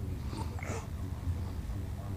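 A baby's two short, breathy grunts in the first second, made while straining on his tummy to lift his head, over a steady low hum.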